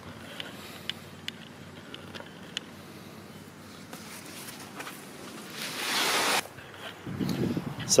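A few faint clicks, then about a second of loud rustling and scraping around six seconds in as a large flexible solar panel (Sunman eArc 355 W) is flipped over on its cardboard box and packing paper.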